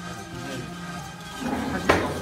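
Background music with steady sustained tones, and a single sharp click shortly before the end.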